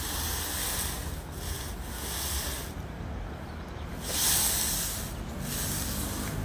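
Handling noise from a phone being shifted on a stone ledge: a hand rubbing and scraping against it in three bursts of hiss, the loudest about four seconds in.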